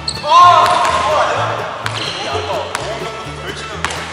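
Background music with a steady low beat, a loud voice exclaiming just after the start, and a few sharp knocks of a basketball bouncing on a hardwood gym floor.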